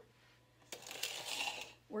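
Angel food cake batter being scraped out of a metal mixing bowl into an aluminium tube pan: a soft scraping rustle starting about two-thirds of a second in and lasting about a second.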